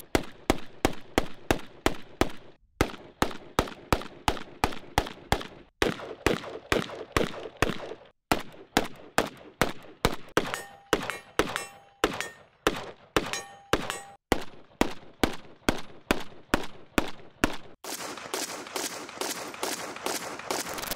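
AK-pattern rifles firing rapid single shots at an even pace of about three a second, in long strings broken by short pauses. The shooting stops a couple of seconds before the end, where a denser, hissing sound takes over.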